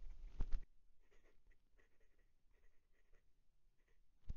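Fountain pen's 0.7 mm stub nib scratching faintly on notepad paper as words are written in short, irregular strokes. Two sharp knocks come about half a second in.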